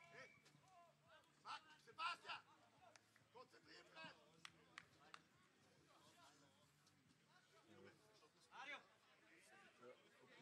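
Faint, distant shouts and calls of players and spectators around a football pitch, with a few short knocks. The clearest calls come about two seconds in and again near the end.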